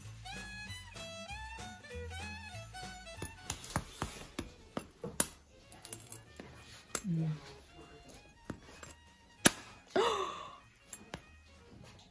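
Background music for the first few seconds, then it stops and scattered sharp clicks and knocks of tableware on a dinner table follow, with a short vocal sound about ten seconds in.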